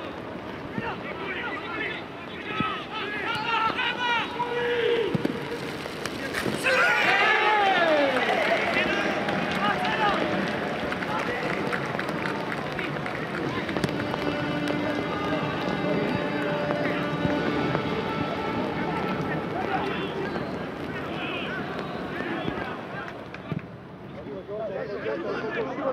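Footballers' and coaches' shouts and calls during play in an empty stadium, with no crowd noise. The shouting is loudest about seven seconds in.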